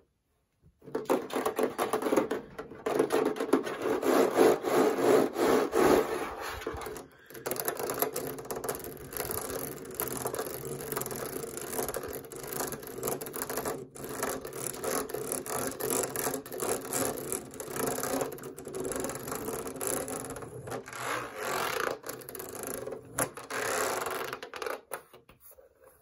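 Fingernails scratching and tapping fast on a tower fan's casing and control panel, a dense run of fine strokes starting about a second in. There are brief breaks about a third of the way through and just past halfway.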